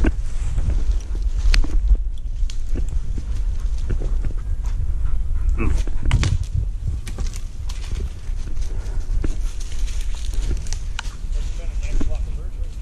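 Footsteps pushing through dry brush and undergrowth, with many short snaps and clicks of twigs and branches, over a constant low rumble of wind and handling on the microphone.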